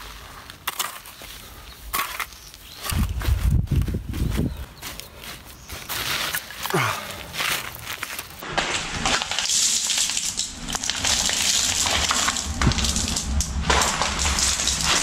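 Shovel scraping and loose soil crunching as earth is thrown onto and packed around the base of a wooden gate post, with heavy thuds a few seconds in. From about eight seconds in, a steady hiss takes over.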